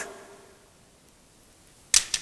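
Quiet room tone, then a single sharp knock near the end with a short echoing tail.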